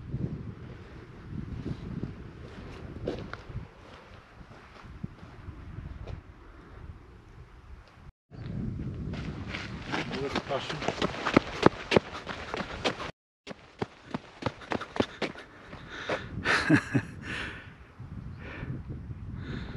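Wind buffeting the microphone in uneven gusts, broken by two sudden cuts, with people laughing near the end.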